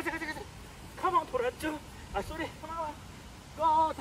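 A person's high, excited calls in several short bursts, cheering a running dog on.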